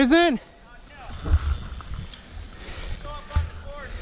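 A man's voice gives a loud, short call right at the start, then fainter distant voices talk, with a few low thumps of wind on the microphone.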